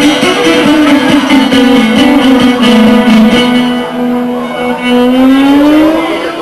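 Šargija, a long-necked Bosnian lute, strummed under one long held note that rises in pitch and breaks off near the end, the closing note of an izvorna folk song.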